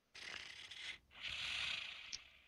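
A sleeping woman breathing in a cartoon: two soft breaths about a second each, the second louder and hissier.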